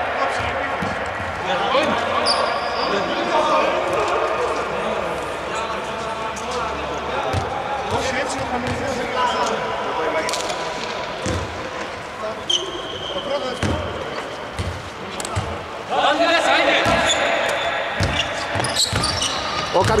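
A basketball bouncing on a hardwood court, with players' voices throughout.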